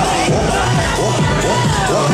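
Many children shouting and cheering together over loud dance music with a steady bass.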